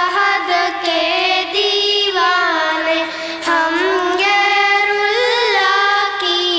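Young girls' voices singing an Urdu nazm into microphones, in long held notes with gliding, ornamented phrases and short breaks between lines.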